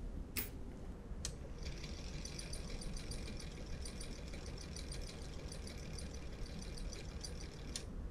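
Small homemade series-wound DC motor running slowly under load, at about 67 RPM, with a faint, fast, even ticking. It starts about a second and a half in and stops just before the end. Two light clicks come before it starts.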